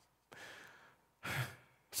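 A man breathing and sighing between sentences: a soft breath, then a louder, short breathy sigh about a second and a half in.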